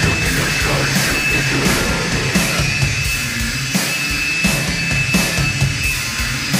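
Black metal/industrial noise music: a dense, loud wall of sound with low bass notes and a heavy beat about every two-thirds of a second, a steady high whine held over it, and no vocals.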